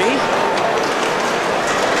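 Live ice hockey game sound in a rink: a steady wash of skate and stick noise from the ice under voices in the arena.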